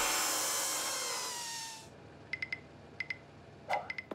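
Cartoon crash sound effect of the wrecked van breaking down, a loud metallic clatter and ringing that dies away over about two seconds with tones sliding down in pitch. A few faint short electronic beeps follow.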